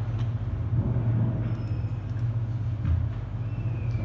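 A steady low hum with faint rumbling room noise.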